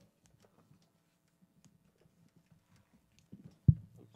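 Quiet instrument-handling noises with a few faint clicks, then a single sharp low thump near the end, the loudest sound, ringing briefly.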